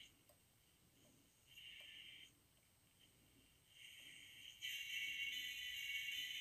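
Faint, tinny music from an AM station coming through the earphone of a Motoradio Motoman pocket radio pressed against a microphone, thin and without bass. It comes and goes at first, then grows steadier and louder about three-quarters of the way in.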